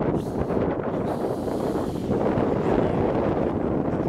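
Strong wind buffeting the microphone: a steady, rumbling rush of noise.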